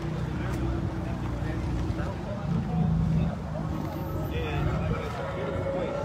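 A car engine running at low revs, a steady low rumble that swells briefly about two and a half seconds in, with indistinct voices of people talking in the background.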